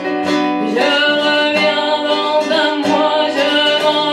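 A woman singing to her own acoustic guitar, her voice holding and gliding between notes over plucked guitar chords.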